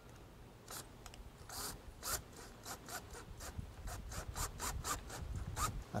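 Cordless drill driving a pocket-hole screw into particle board, heard as a series of short rasping bursts of the screw grinding into the board. The bursts come faster in the second half, about four or five a second.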